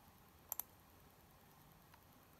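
Two quick, sharp clicks in close succession about half a second in, over near silence.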